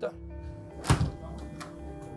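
A door thunks once, loudly, about a second in, over background music with long held notes.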